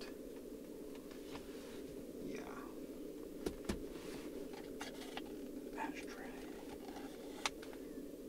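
Steady low hum of the FD RX-7's idling twin-rotor engine, heard from inside the cabin, with a few light clicks of a hand on the plastic centre console: two about halfway through and one near the end.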